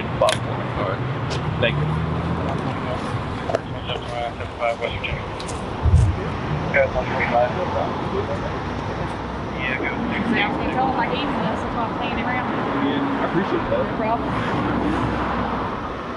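Steady roadside traffic noise from passing cars and trucks, with a low rumble in the first few seconds, under indistinct voices. A single thump about six seconds in.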